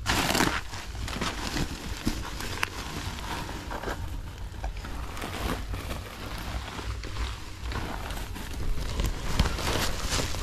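Garbage and woven sacks being gathered up by hand: irregular rustling, crinkling and crackling, with a louder rustle at the very start. Light footsteps on the ground run underneath.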